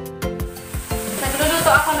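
Food sizzling as it fries in a hot pan, coming in about half a second in, over background music with a steady beat.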